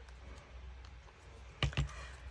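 Light clicks and paper handling from fingers pressing the edges of a glued, book-paper-covered playing card together, with two sharper taps near the end.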